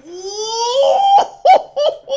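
A man's excited vocal reaction: one long shout rising in pitch, breaking after about a second into short bursts of laughter.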